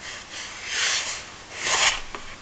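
Two short rubbing swishes, about a second apart, the second a little louder.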